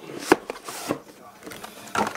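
Cardboard Pokémon Elite Trainer Box being handled and knocked against a tabletop: a sharp knock about a third of a second in and another about a second in, with light rustling between.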